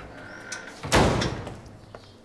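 A door slammed shut: one loud bang about a second in that fades quickly, as an angry man comes into the room.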